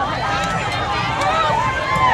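Street crowd at a parade: many voices talking and calling out at once, overlapping, with no single voice standing out.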